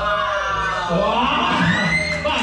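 Children in an audience calling out with long, drawn-out whoops, falling then rising in pitch, over background music.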